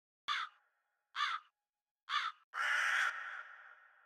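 Bird calling: three short calls about a second apart, then a longer drawn-out call that fades away.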